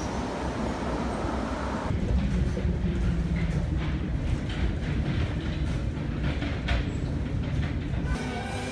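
Straddle-beam monorail train running on its elevated beam. For the first two seconds it passes overhead as an even rushing noise. It then changes abruptly to the sound inside the moving car: a low rumble with a steady low hum and scattered sharp clicks and knocks.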